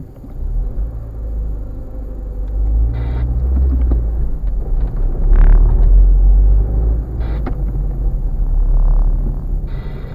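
Low, steady rumble of the car's engine and road noise heard inside the cabin as the car pulls away from a standstill and drives on, with two brief rattles about three and seven seconds in.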